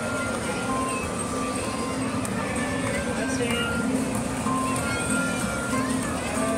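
Simple electronic jingle playing from a coin-operated kiddie ride: a tune of short, pure beeping notes over a steady, regular beat, with crowd chatter under it.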